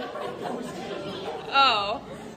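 Voices chattering in a large, echoing room, then a loud, high-pitched excited cry about a second and a half in.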